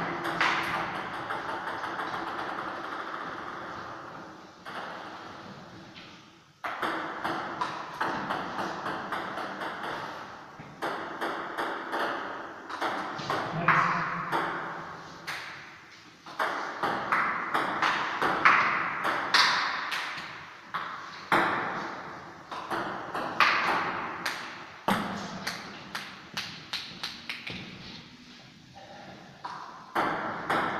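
Table tennis rallies: the celluloid ball clicking sharply off the paddles and the table, each click with an echo from the hard-walled room. The runs of hits are broken by short pauses, and near the end comes a quick series of clicks as the ball bounces.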